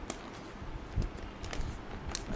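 Plastic-wrapped cardboard display boxes being handled, with a few light crinkles and taps over a faint background hiss.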